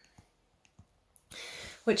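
A reader's pause: a few faint mouth clicks, then an audible in-breath about a second and a half in, just before she speaks again.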